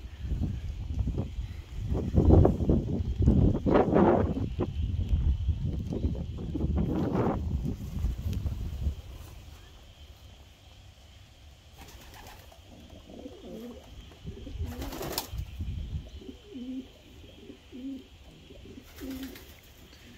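Racing pigeons cooing, a run of short low coos in the second half. In the first half, gusting wind rumbles on the microphone.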